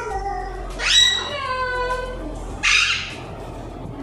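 Alexandrine parakeet calling: one long, drawn-out call starting about a second in, falling slightly in pitch, then a short harsh squawk near three seconds.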